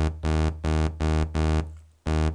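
Novation Circuit Mono Station analogue synth playing a sequenced bass line: the same low note repeats about three times a second, each note starting bright and fading. The envelope settings are being dialed in as it plays.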